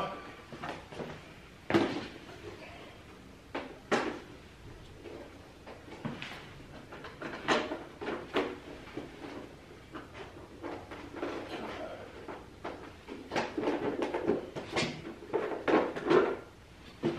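Sharp plastic clicks and knocks of a Harley-Davidson Sport Glide's detachable fairing being unlatched and worked loose from its mounts by hand. The knocks come one at a time with gaps between them, then bunch up near the end.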